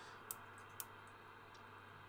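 Two short clicks about half a second apart from the rotary band switch of a Cobra 148 GTL-DX CB radio being turned a step at a time. Otherwise near silence.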